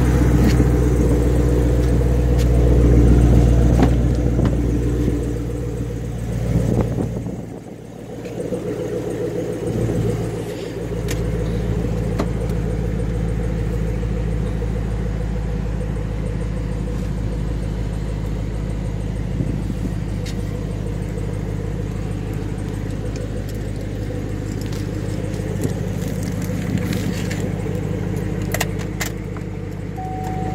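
2013 Chevrolet Camaro engine idling steadily, louder at first, then heard from inside the cabin after a brief dip about eight seconds in. A few light clicks near the end.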